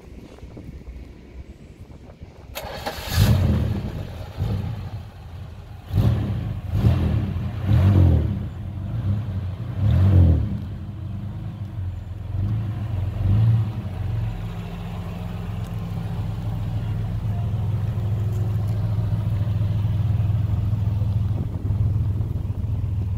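1974 Dodge Polara RT's six-cylinder engine (Chrysler slant-six) starting about two and a half seconds in, revved several times in short blips, then settling into a steady idle.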